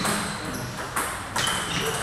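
Table tennis ball struck by bats and bouncing on the table as a serve starts a rally: a few sharp, hollow ticks, the first about a second in.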